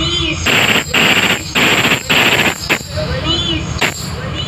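Loud DJ dance music over a sound system, broken into a run of harsh, rapid noise bursts with short gaps between them, like a gunfire sound effect in the mix. A wavering voice or melody comes in near the end.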